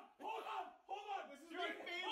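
Two men shouting over each other in a heated argument, their raised voices overlapping.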